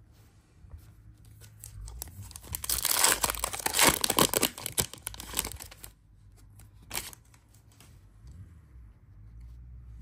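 A foil-lined trading-card pack wrapper torn open and crinkled by hand, loudest for a few seconds in the middle, followed about a second later by a single sharp crackle of the wrapper.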